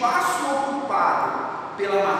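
A man speaking, explaining a lesson in a lecturing voice.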